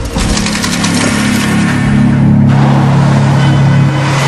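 A loud, steady low hum with a hiss over it, engine-like in character; the hiss cuts off abruptly about two and a half seconds in while the hum carries on.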